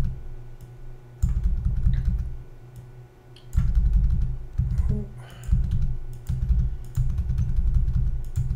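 Computer keyboard keys tapping in short spells, with dull thuds carried through the desk into the microphone.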